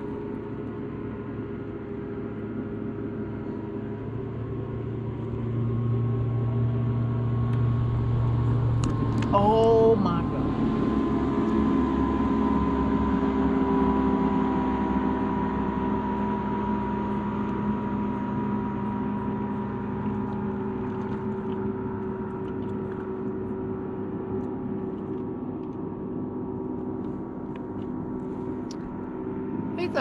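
Boat motor running as a steady hum with several held tones; it grows louder over the first several seconds and then slowly eases off. A brief sharp sound with a short squeak comes about nine seconds in.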